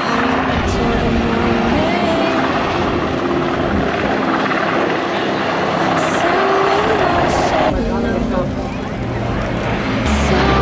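Sikorsky S-70 Seahawk helicopter flying past, its rotor and turbine engines running steadily and loudly. The sound changes near the end, with the high end dropping away.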